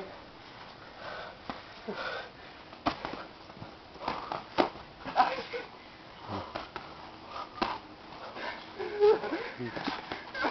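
Boxing gloves landing punches as sharp slaps, a handful spread over the seconds, with hard breathing and sniffing between them.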